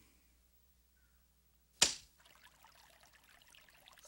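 Near silence broken about two seconds in by one sudden sharp hit, an animated-show sound effect, followed by a faint trickle of water.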